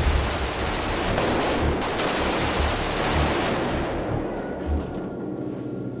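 Sustained automatic gunfire, a dense rattle of rapid shots with deep thuds among them, that starts suddenly and eases slightly near the end.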